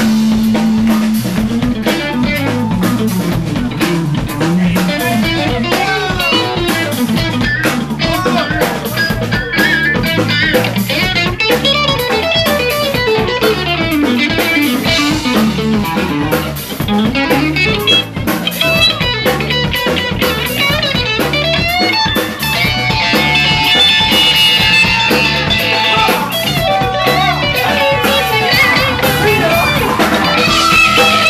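Live rock band playing: electric guitars over bass and a drum kit, with bending notes in the guitar line.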